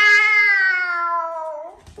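A toddler crying: one long drawn-out wail that slowly falls in pitch and breaks off after about a second and a half.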